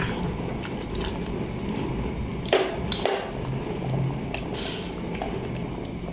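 Metal spoon stirring a thick curry gravy in a steel pot: soft wet squelching, with a couple of light clicks of the spoon against the pot around the middle.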